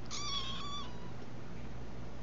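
A five-week-old kitten gives one short, high-pitched mew near the start, lasting under a second.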